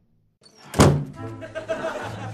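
A single loud thud about three-quarters of a second in, after a moment of silence, with a short ringing tail.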